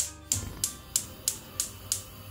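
Gas hob burner's electric igniter clicking about three times a second as the burner is lit, over background music.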